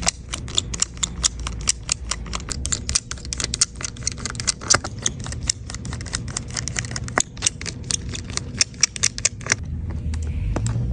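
Rapid, irregular sharp clicks and taps of a precision screwdriver and small screws and metal parts against an iPad's frame during disassembly, several a second, over a steady low hum.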